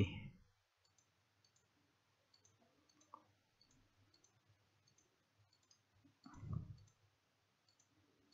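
Faint, scattered computer mouse clicks at irregular intervals, one a little louder about three seconds in, with a short low hum of a voice just after six seconds.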